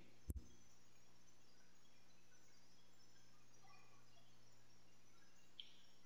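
Near silence with a faint steady electrical hum, broken once shortly after the start by a single sharp click.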